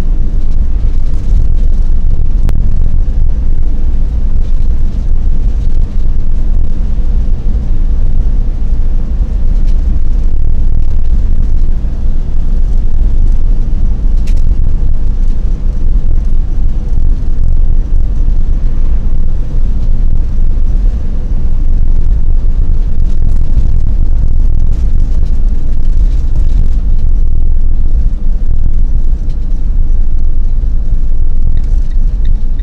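Steady, loud low rumble of a vehicle driving along an open road: road, engine and wind noise, heaviest in the bass.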